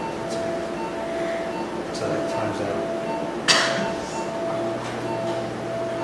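Operating-room equipment giving a steady electronic tone and a rapid repeating beep, with one sharp clink about three and a half seconds in.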